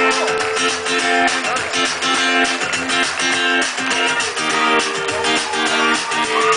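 Acoustic guitar strumming chords in a steady, even rhythm, played live on stage.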